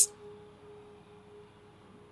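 A faint, steady held tone from the background score, fading away; otherwise the scene is quiet.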